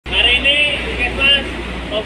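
Voices of a group of people speaking and calling out, over a low steady rumble that fades near the end.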